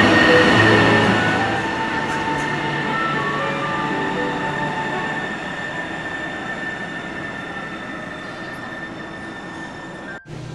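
Sound Transit Link light rail train pulling out of an underground station. Its rumble and a steady high whine fade away as it leaves, with tunnel echo.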